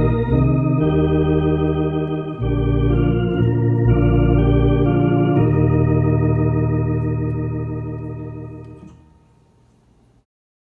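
Tokai T1 Concert electronic organ on a drawbar (tonewheel-simulating, Hammond-style) registration playing sustained hymn chords, changing every second or two. The last chord is held and fades out toward the end.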